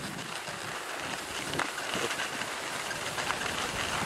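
Skis sliding over packed snow while skiing downhill, with air rushing past: a steady hiss, with a couple of faint clicks near the middle.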